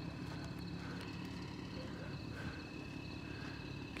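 Faint outdoor street background at night: a steady low hum under a quiet even hiss, with no distinct event.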